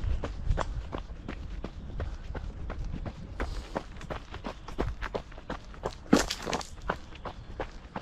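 A runner's footsteps on a dirt trail, an even jogging stride of about three footfalls a second, with one louder, sharper step about six seconds in.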